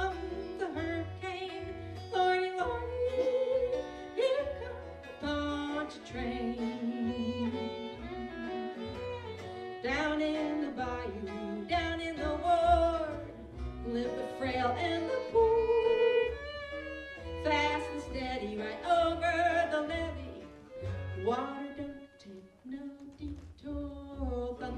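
An acoustic folk band playing live: singing over fiddle, acoustic guitar and plucked upright bass, the bass notes keeping a steady beat.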